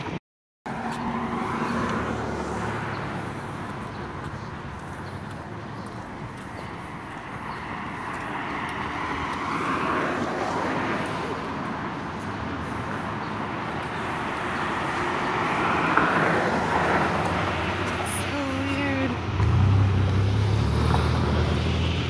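Cars passing one after another on a city street, each swelling and fading in a steady traffic hiss. Near the end a steady low engine hum sets in.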